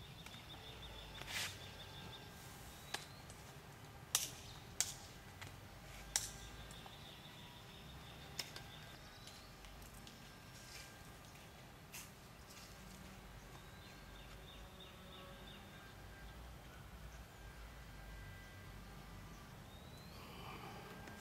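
Quiet outdoor ambience with a bird's high, rapid trill heard in three short phrases. There are several sharp clicks in the first half, over a low rumble.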